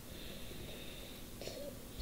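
Faint room tone with quiet breathing into a close microphone, and a brief faint sound about one and a half seconds in.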